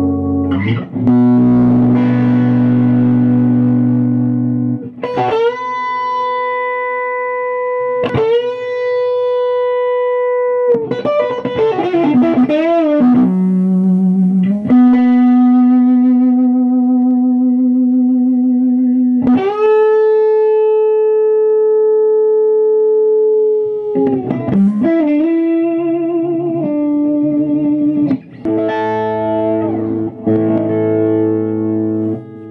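Electric guitar with Fralin high-output pickups, played slowly through an amplifier. Long sustained single notes ring for several seconds each. Several notes are bent up into pitch, and there are wavering bends and vibrato around the middle and again near the end.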